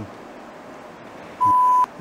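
A single short electronic beep: one steady, pure high tone lasting just under half a second, about a second and a half in.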